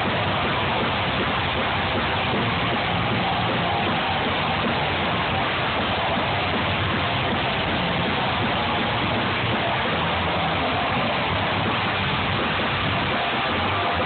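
A rock band playing live, with a loud, distorted electric guitar blurred into a dense, steady wash of sound.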